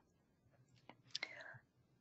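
Near silence, broken by a couple of faint clicks and a brief faint breathy sound about a second in.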